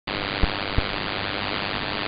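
Shortwave receiver hiss and static in upper sideband on 11560 kHz, steady and filtered, with two short low crackles in the first second.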